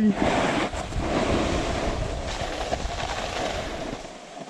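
Snowboard sliding and carving over soft spring snow, the board's base hissing and scraping steadily, with wind rushing over the camera microphone.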